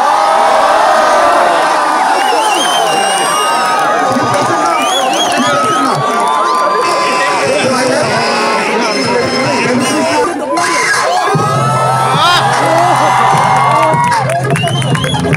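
A large crowd cheering and shouting, with many shrill calls rising and falling over a dense mass of voices. A steady low hum or bass joins in about eleven seconds in.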